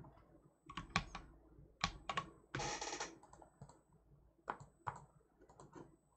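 Computer keyboard and mouse clicks: a few scattered, irregular taps, with one longer noisy stretch about two and a half seconds in.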